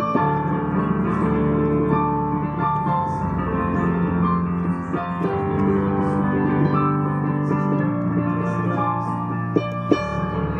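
Digital piano played with both hands: a steady flow of held chords and melody notes. Two sharp knocks near the end.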